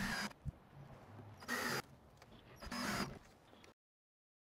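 DeWalt 18V cordless drill driving number eight grabber screws through plywood into a 2x4, in two short bursts. The sound cuts off suddenly near the end.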